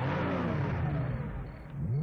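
Car engine on a movie soundtrack, its pitch falling and then rising steeply near the end as it revs and accelerates.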